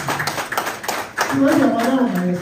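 Clapping, a quick run of sharp claps through the first second or so, mixed with a man's voice that continues talking to the end.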